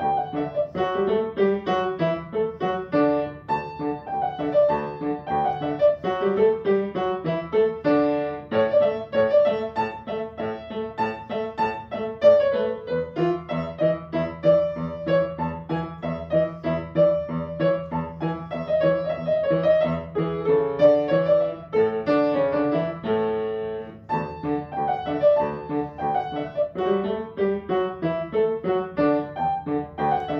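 Upright piano played continuously: a melody over chords, with one chord held about 23 seconds in and a brief lull just after.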